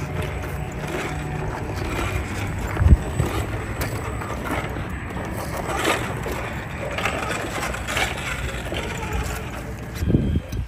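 A 1/10-scale Redcat RC rock crawler grinding slowly over concrete rubble: the electric motor and drivetrain run under load while the tyres scrabble and click on the rock. There is a single louder knock about three seconds in.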